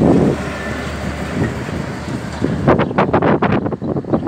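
Iveco grain truck with trailer driving away, its diesel engine running with a low steady hum and road noise. From about two-thirds of the way in, wind buffets the microphone in rapid irregular thumps that become the loudest sound.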